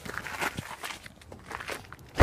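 Footsteps on gritty pavement: a few irregular steps and scuffs.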